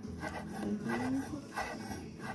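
Chef's knife slicing surimi sticks into thin strips on a wooden cutting board: a series of soft cuts with the blade scraping and tapping on the wood.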